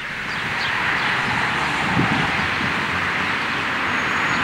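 Steady outdoor street ambience, an even hiss of road traffic that swells in over the first second and then holds.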